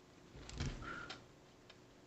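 Quiet handling of a liquid eyeliner pen as it is picked up and opened: a cluster of soft clicks and a low knock about half a second in, with a brief squeak, then one more small click.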